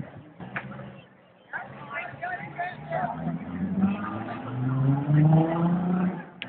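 Voices of a crowd talking, then a motor vehicle's engine slowly rising in pitch and getting louder through the second half, the loudest sound here.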